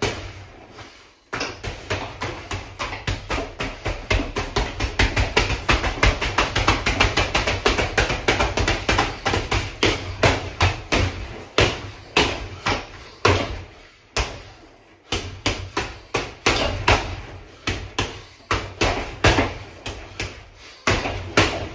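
Boxing gloves hitting a hanging heavy punching bag in a long rapid flurry of punches, several a second, then a short pause about two-thirds of the way through before slower, spaced punches resume.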